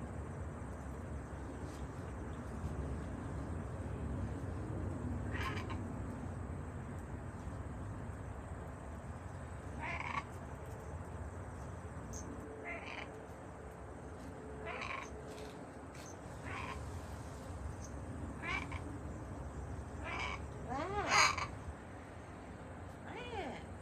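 Pet parrots giving short, scattered chirps and squawks, about a dozen spaced irregularly, the loudest and longest near the end. A steady low outdoor rumble sits underneath.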